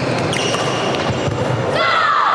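Badminton rally in a large echoing hall: sharp racket strikes on the shuttlecock and short squeaks of court shoes on the wooden floor, over a steady murmur of spectators. Near the end a falling pitched squeak or call rises above the rest.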